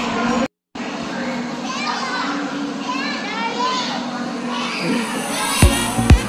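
Children shouting and calling out over a busy crowd hum in a large, echoing hall, with the sound cutting out completely for a moment about half a second in. Near the end, a steady thumping beat of about two strokes a second begins.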